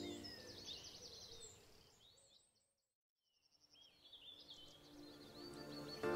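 Background music with bird chirps fades out to silence about halfway through, then fades back in.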